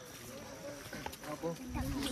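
Low chatter of several people talking at some distance, no one voice clear, with a brief low rumble near the end.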